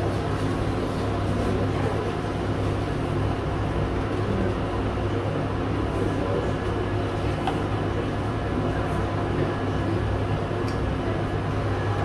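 Steady low hum of ventilation with an even hiss over it: the constant background noise of the room.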